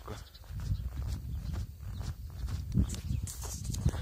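Bare feet walking on snow, over a low rumble on the phone's microphone.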